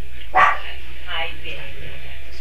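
A newborn Great Dane puppy gives one short, loud yelp about half a second in while being handled, with softer squeaky sounds after it.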